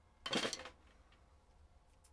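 Drumsticks set down on a snare drum: a brief wooden-and-metal clatter against the head and rim about a quarter second in.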